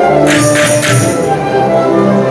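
Symphonic wind band playing sustained chords, with a tambourine struck a few times in quick succession in the first second.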